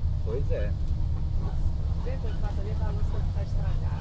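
Cabin noise of a moving bus: a steady, deep rumble of engine and road, with voices talking faintly over it.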